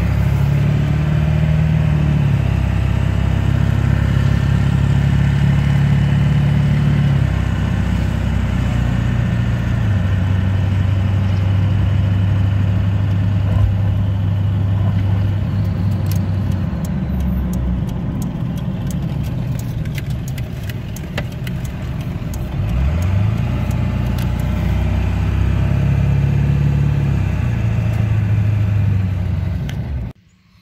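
Ford 7.3 L Powerstroke V8 turbodiesel heard from inside the cab of an OBS Ford truck while driving. Its low drone steps down and climbs again several times as the automatic transmission shifts, with one rising pull about two-thirds of the way through. The truck has the bouncing speedometer and odd shifting that the owner traced to a worn, cracked vehicle speed sensor on the rear differential.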